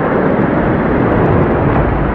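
Surf heard from underwater: a loud, steady, muffled rumble of churning water with the high hiss gone.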